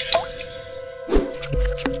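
Logo intro jingle: electronic music with steady held tones, a few short pops and a falling tone near the end.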